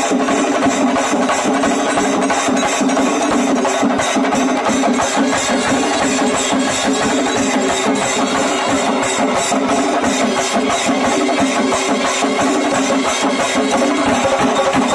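Kerala chenda drums beaten with sticks in a dense, rapid stream of strokes, played together with a brass band holding long sustained notes: a band-and-chenda singari melam contest.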